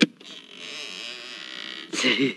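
A sharp click from the latch of a wooden door as its knob is turned to open it, followed by a steady hiss for about a second and a half and a fainter click near the end.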